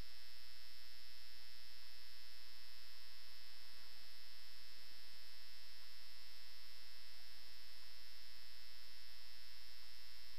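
Steady electrical hum with a constant faint high whine over it, unchanging throughout: the background noise of the recording setup, with no other sound.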